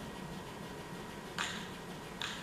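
A basketball with a tennis ball stacked on top hitting the floor together, one short soft bounce about a second and a half in, over a steady faint hiss.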